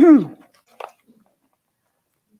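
A woman's voice making a short falling throat-clearing sound as her sentence ends, followed a little under a second in by one faint click.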